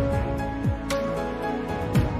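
Background music: soft instrumental track with held synth tones over a steady beat, a kick and a sharp percussive hit about once a second.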